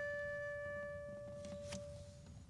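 The last note of an improvised instrumental piece ringing on and fading away, a steady high tone with a few overtones that dies out near the end, with a few faint clicks.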